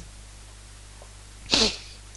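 Faint steady low hum, then about one and a half seconds in a short, hissy breath from the narrator.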